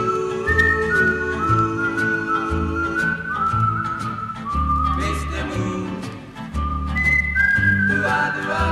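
Music: a whistled melody, held notes with small glides between them, over a band backing with steady bass notes. It is an instrumental break in a late-1950s pop/rock and roll song.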